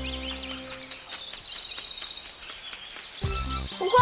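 Birds chirping in quick high trills, a forest-ambience sound effect, over soft background music that fades out about a second in and comes back near the end.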